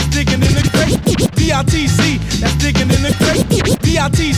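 1990s hip-hop beat with a repeating bass line, with short back-and-forth DJ record scratches cutting across it about a second in and again near the end.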